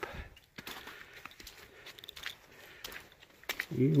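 Faint footsteps of hiking boots on a wet, slushy snow-and-mud trail. A man's voice resumes near the end.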